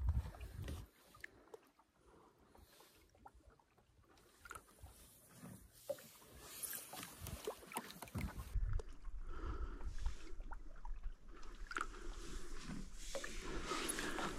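Quiet sounds of a small boat on a lake: scattered faint knocks and water movement, with a steady low rumble coming in about eight seconds in.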